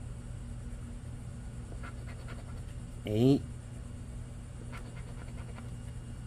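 Faint scratching of a poker-chip scratcher rubbing the latex coating off a scratch-off lottery ticket, over a steady low hum. A brief vocal sound about three seconds in.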